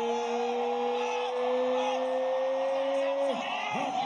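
A man's voice holding one long, slowly rising shout that breaks off about three seconds in, over a cheering arena crowd and other voices shouting.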